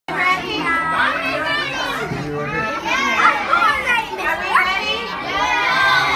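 Many young children's voices talking and calling out over one another, loud and overlapping.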